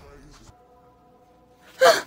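A woman's short, loud gasp near the end, after a second or so of faint, steady held tones.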